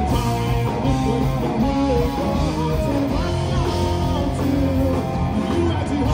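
A rock band playing live, with electric guitars leading over bass guitar and a drum kit.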